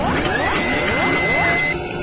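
Synthesized sound effects for a TV show's animated opening logo: a quick run of rising sweeps, about three a second, over a dense electronic bed, with a high held tone that cuts off just before the end.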